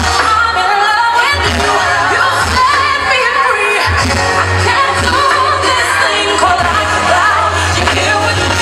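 Loud pop song: a lead singing voice carrying a wavering melody over a backing track with a deep, steady bass line.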